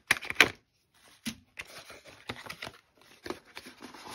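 Hands handling a cardboard knife box and its paper sleeve: a quick run of short scrapes, taps and rustles, loudest in the first half-second.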